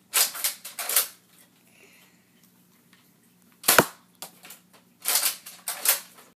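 Nerf Retaliator pump-action foam dart blaster being worked and fired. Short plastic priming strokes come just after the start, one sharp snap of a shot comes just under four seconds in, and two more priming strokes come near the end.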